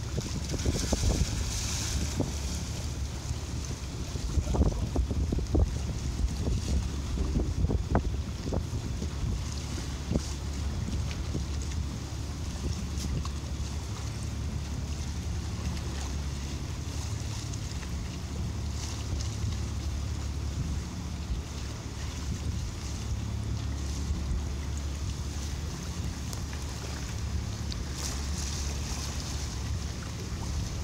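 Fishing boat's engine running steadily under way, with wind on the microphone and water moving along the hull. A few short knocks or splashes stand out in roughly the first ten seconds.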